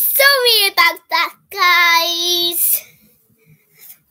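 A young girl singing unaccompanied: a falling phrase, two short notes, then one long held note of steady pitch about halfway through.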